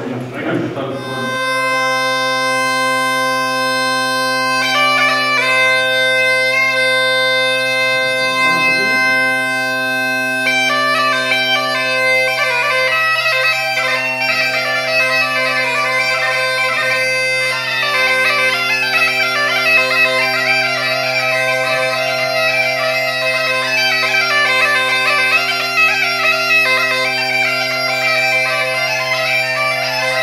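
Galician bagpipe (gaita galega) fitted with a multitone bass drone, retuned to C: the drone sounds up about a second in, long held chanter notes follow, and from about ten seconds in the chanter plays a melody over the steady drone.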